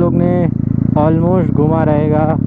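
Motorcycle engine running steadily as the bike is ridden along a road, a low even drone under a man talking over it.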